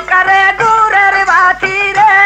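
Bengali jari gaan folk music: a held melody line in long, slightly bending notes, with a few short percussive strokes underneath.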